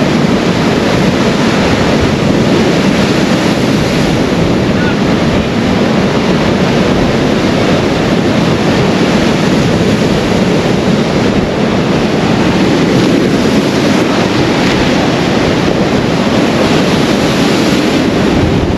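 Rough Irish Sea surf breaking and washing up against a concrete sea wall and steps, a loud, steady churning rush of water. Wind buffets the microphone throughout.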